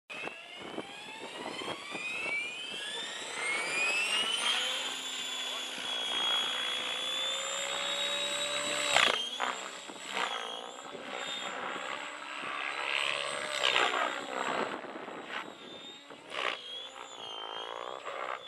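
Radio-controlled model helicopter's motor and rotor whining, rising steadily in pitch over the first four seconds or so as it spools up, then holding a high whine that dips and bends in pitch several times as it flies.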